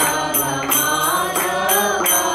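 Devotional group chanting (kirtan): several voices sing a mantra together over a steady beat of small hand cymbals, about three strikes a second.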